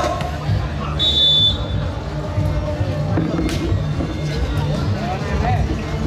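Volleyball match crowd chatter over background music, with a short, high referee's whistle blast about a second in and a sharp ball strike a little after the middle, as the next rally starts.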